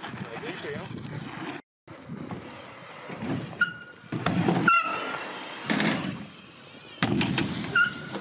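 A BMX bike riding on steel skatepark ramps: the tyres rumble as they roll over the metal, with several short high squeaks and a few sharp knocks as the bike lands and turns.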